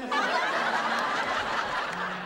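Studio audience laughing together, starting abruptly and easing off near the end.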